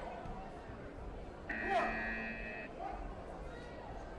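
Electronic competition buzzer sounding once, a steady multi-pitched tone lasting about a second, starting about a second and a half in, over the murmur of voices in a large hall.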